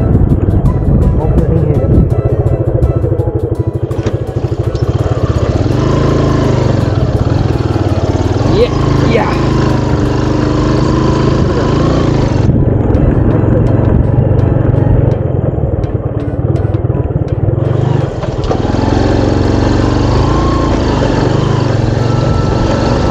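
Motorcycle engine running steadily while the bike is ridden along a rough village lane.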